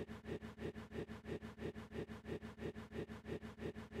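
A faint, steady low hum that pulses evenly about six times a second.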